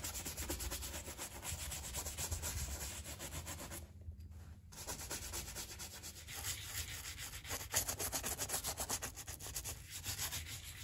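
A wooden-backed shoe brush is stroked quickly back and forth over a leather boot, buffing it to a shine. The strokes make a scratchy rubbing with a brief pause about four seconds in.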